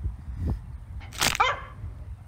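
A single short bark-like yelp about a second in, falling in pitch, over a low rumble.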